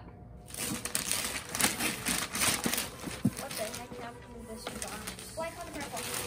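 Gift wrapping paper rustling, crinkling and tearing as a present is unwrapped, starting about half a second in, with faint voices near the end.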